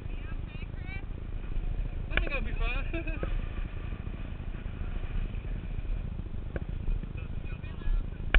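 Motorcycle engines running at low speed nearby over a steady, uneven low rumble. Brief voices come in about two seconds in.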